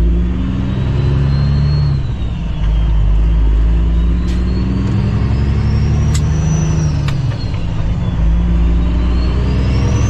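Cummins ISX diesel engine of a 2008 Kenworth W900L running under load as the truck drives, heard from inside the cab. The engine note dips briefly about two seconds in and again about seven seconds in. A faint high whistle slowly rises and falls over it.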